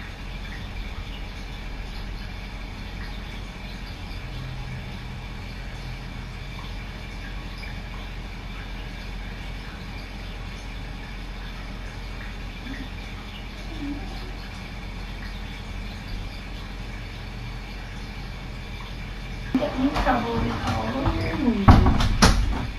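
Steady low hum and hiss of room noise picked up by the camera microphone. Near the end a person starts speaking, with a sharp knock just before the end.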